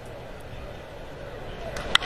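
Steady ballpark crowd noise, then just before the end a single sharp crack of a wooden baseball bat squarely hitting a pitched ball, a hit that carries for a home run.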